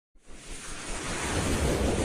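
A rushing, wind-like noise swelling up out of silence and then holding steady: an edited-in intro sound effect.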